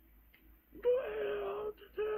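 A person's voice letting out a long moan at a steady pitch that sags slightly, starting about a second in, then a second moan beginning near the end.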